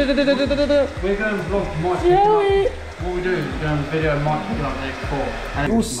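Men's voices talking, over a steady low hum.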